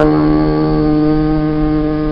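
A male voice chanting a khassida, holding one long steady note at the drawn-out end of a sung line.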